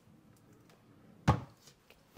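A drawer shut with a single loud thunk about a second and a quarter in, with a few faint clicks around it.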